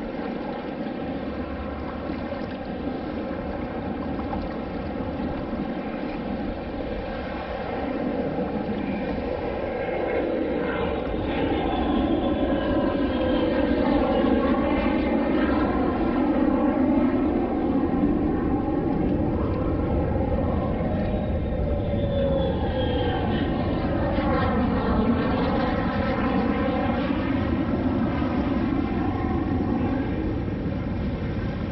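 A motor droning, growing louder about ten seconds in and staying loud, its pitch sliding down and back up as it moves.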